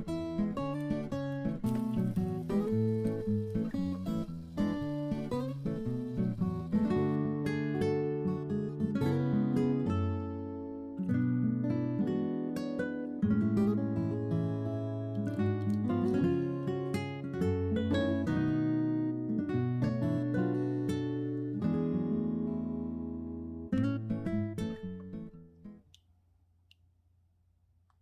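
Background music: acoustic guitar playing a plucked, strummed tune, fading out near the end.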